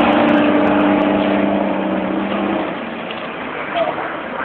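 Fire engine pulling away down the road, its sound fading as it goes. A steady low tone dies out about two and a half seconds in, leaving a fainter road rumble.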